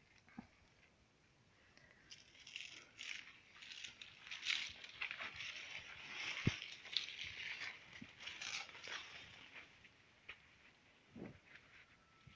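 Faint, irregular rustling and crackling of leaves and vines brushing past as someone moves through dense greenhouse plants, with a single sharp knock midway.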